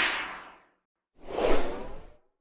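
Two whoosh sound effects for an animated logo outro. The first is a bright swish at the very start that fades within about half a second. About a second later comes a deeper, louder whoosh.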